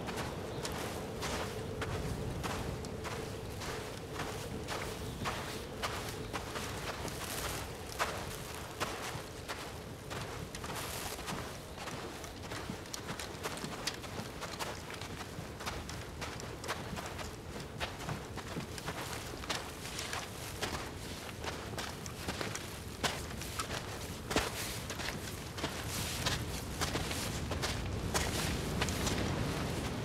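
Footsteps of people walking through snow, an irregular run of steps, one to two a second, with now and then a sharper knock.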